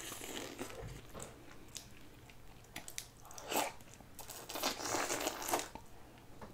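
Close-up eating sounds: boiled shrimp being peeled by hand, the shells crackling, mixed with wet chewing. The crackles come in scattered bunches and are fullest in the second half.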